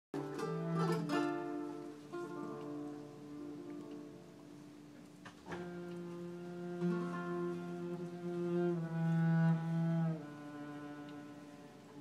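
Live flamenco guitar and cello duet. The cello holds long bowed notes that move step by step, while the guitar strikes strummed chords: at the start, about a second in, and again about five and a half seconds in.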